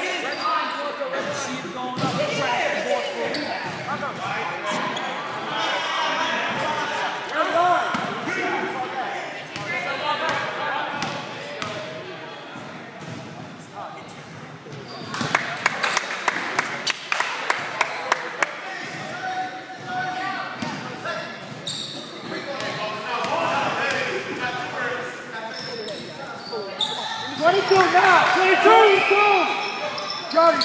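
A basketball bouncing on a wooden gym floor, a quick run of sharp bounces in the middle, with indistinct voices of players and spectators echoing in a large hall throughout and louder shouting near the end.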